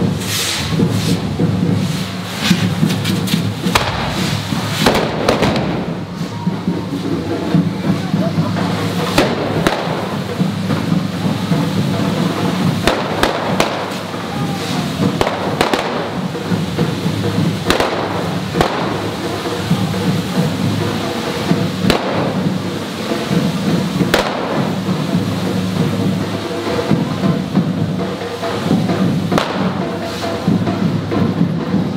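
Hand-held firework sprays (carretilles on devils' forks) fizzing continuously, with several sharp bangs, while drums and percussion play over them.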